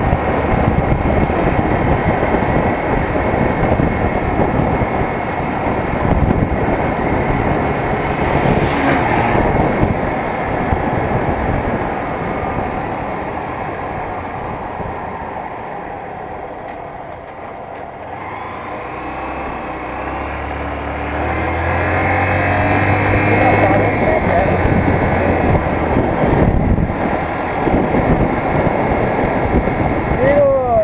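A small street motorcycle riding through town with wind rushing over the handlebar-mounted microphone. The engine eases off and the sound drops to its quietest about halfway through, then the engine pitch climbs in steps as the bike accelerates through the gears.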